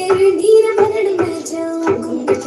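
A song with a high singing voice over a steady percussive beat.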